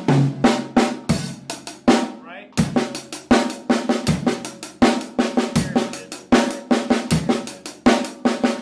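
Drum kit played with sticks: a paradiddle rudiment (right-left-right-right, left-right-left-left) worked into a groove around the snare and toms, in quick strokes. It stops briefly about two seconds in, then starts again.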